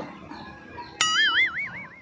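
A single sound-effect note that starts suddenly about a second in and rings for about a second, its pitch wobbling up and down about four times a second.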